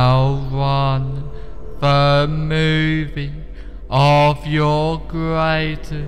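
A low male voice chanting drawn-out, mantra-like syllables on a nearly level pitch, several held notes in a row, over a steady low hum.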